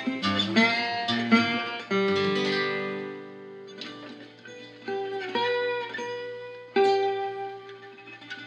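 National resonator slide guitar and a Taylor six-string acoustic guitar playing an instrumental passage. A quick run of plucked notes comes first, then fewer notes, several left ringing for a second or more.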